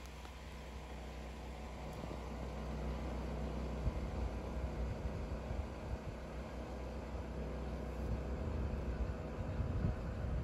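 A steady low rumble with a faint hum, slowly growing louder, with a few soft bumps about four seconds in and near the end.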